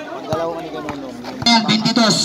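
Voices of people around the court talking and calling out, with a louder shout near the end.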